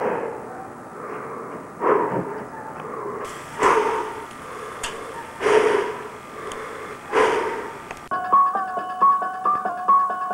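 Dramatic music: a heavy hit repeating about every two seconds, giving way about eight seconds in to a quick repeating keyboard melody.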